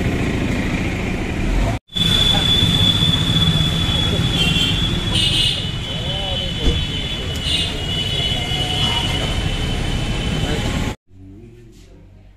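Outdoor street ambience: steady traffic noise and indistinct voices, with a thin high steady tone and a few short high blips in the middle. It drops out briefly about two seconds in, then cuts off sharply near the end to quiet room tone.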